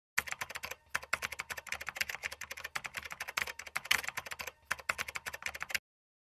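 Rapid typing on a computer keyboard: a fast, uneven run of keystroke clicks with two short breaks, stopping just before the end.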